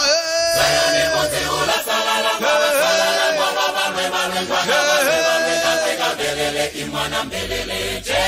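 Mixed choir of men and women singing in harmony, a high voice holding three long notes over the lower parts.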